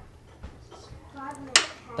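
Low workshop sound as a spark plug is tightened with a beam torque wrench on a long extension, with one sharp click about one and a half seconds in. A brief faint voice comes just before the click.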